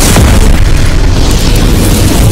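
Explosion sound effect: a loud, sustained blast, heaviest in the low end.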